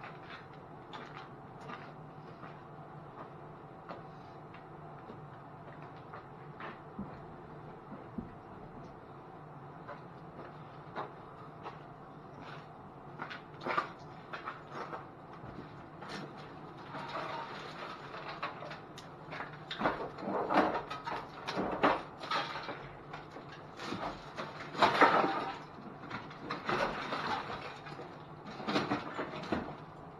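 Loose junk being rummaged through and moved around in the back of a minivan: rustling, scraping and clattering of objects. Only a few scattered clicks at first; from about halfway the handling gets busier and louder, with the loudest clatters a few seconds apart.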